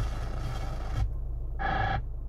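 2015 Hyundai Santa Fe's factory car radio hissing with static on an empty FM frequency (87.5), cut off sharply about a second in as the band is switched. Near the end comes a short buzzing tone, with a steady low hum underneath.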